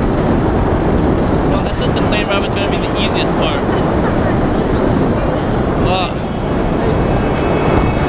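Loud, steady rush of freefall wind buffeting the camera microphone during a tandem skydive.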